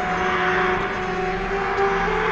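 Experimental ensemble music: several held tones drone together under a rushing, noisy wash that swells about half a second in.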